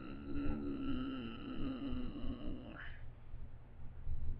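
A person humming one long closed-mouth "mmm", its pitch sliding slowly down before it stops about three seconds in.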